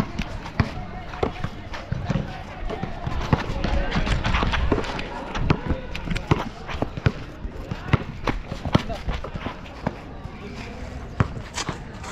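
A basketball is dribbled on an outdoor hard court, making repeated sharp, irregular bounces. Players' running footsteps and voices are mixed in.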